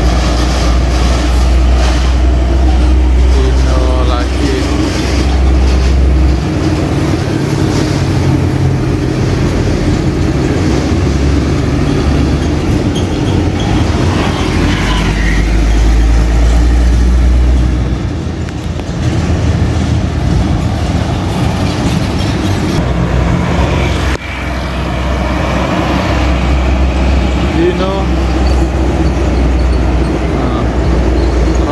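Heavy diesel trucks passing close by on a busy road, with deep engine rumble and steady traffic noise.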